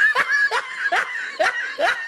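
A person laughing in short, rhythmic snickering bursts, each rising in pitch, about two or three a second.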